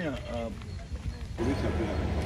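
Faint voices of people talking in the background, in short snatches, over a low steady rumble.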